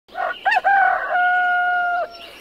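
A rooster crowing: a couple of short notes, then one long held final note.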